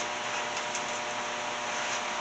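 Steady running noise of small hydroelectric plant machinery, an even whirr with a faint constant hum, as the turbine-generator keeps producing.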